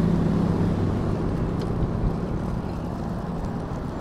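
Steady wind and road noise picked up by a chest-mounted action camera's microphone while riding a road bike, with a low hum underneath; it begins suddenly.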